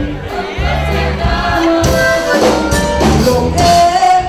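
Live Tejano band playing a song through the club's PA, with sung vocals over a steady bass line.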